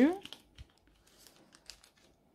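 Clear plastic binder pocket page crinkling faintly as a paper filler card is slid into a pocket, a few soft rustles and ticks.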